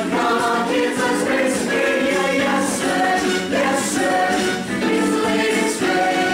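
Mixed-voice high school show choir singing in harmony, loud and continuous, with chords shifting every fraction of a second.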